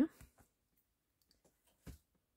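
A clear acrylic stamp block worked on an ink pad while inking a branch stamp: a couple of faint ticks, then one sharp click near the end.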